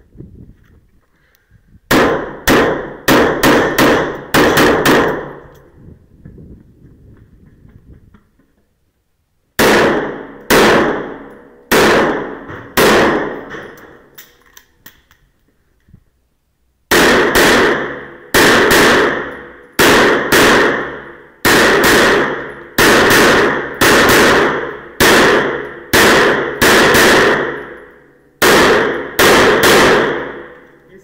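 Strings of pistol shots fired in rapid succession during an IPSC stage, each shot ringing out in the enclosed indoor range: about eight quick shots early on, four more around the ten-second mark, then a long string of some twenty shots after a pause.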